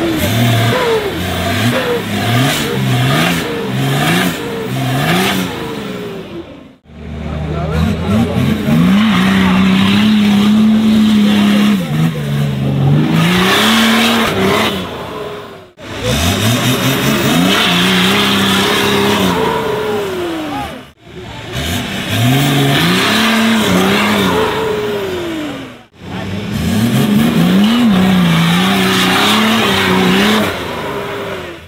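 Nissan Patrol off-roader's engine revving hard in repeated surges as it claws up a deep mud trench: quick rev blips at first, then long spells held at high revs that sag and rise again, broken by a few abrupt cuts.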